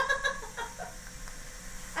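A laugh trails off at the start, then a faint, steady hiss of air being drawn through an e-cig dripper mod during a long inhale.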